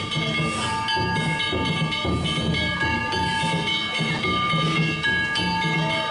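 Danjiri festival music: a taiko drum beating steadily with clanging hand gongs whose ringing tones carry on over the beat.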